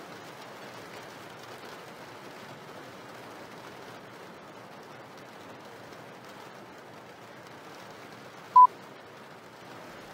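Faint steady hiss, and about eight and a half seconds in a single short electronic beep at one steady pitch from a cordless phone.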